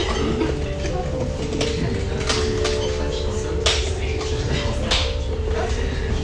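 Restaurant ambience: a background murmur of diners' voices, with cutlery and dishes clinking sharply a few times, over steady background music.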